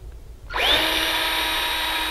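Cordless drill with an eighth-inch bit drilling a pilot hole into a wooden door jamb: the motor starts about half a second in, rises quickly in pitch, then runs at a steady high whine.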